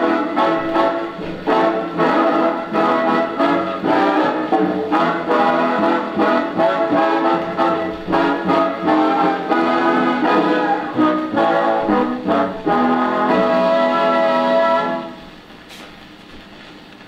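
Swing big-band brass section playing the closing bars of a 78 rpm shellac record on a Califone phonograph, in short punchy chords that build to one long held chord. About fifteen seconds in the music stops and only faint surface noise from the record is left.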